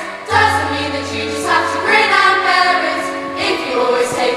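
Large girls' choir singing held, sustained notes that change every second or so, with a low note held beneath the voices for the first couple of seconds and a short breath break at the start.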